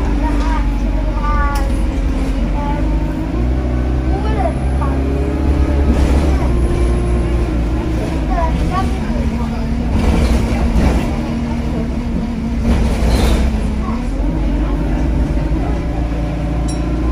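Bus engine running and road rumble heard from inside the passenger cabin, with a few short rushes of noise about six, ten and thirteen seconds in.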